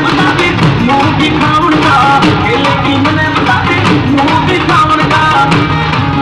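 Loud Haryanvi folk-style song with a singing voice over a steady drum beat.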